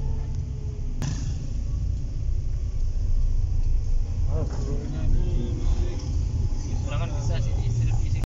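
Low, steady rumble of a car's engine and tyres on the road, heard from inside the cabin while driving. There is a sharp click about a second in.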